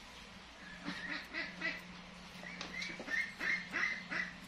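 A baby macaque crying in short repeated squeaky calls, about four a second, in two runs.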